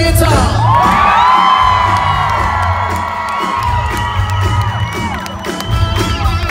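A rock band playing live, with bass and drums pulsing under a long held high note that lasts from about a second in until near the end, while the crowd cheers and whoops.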